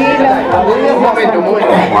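Speech only: several people talking over one another, no clear words.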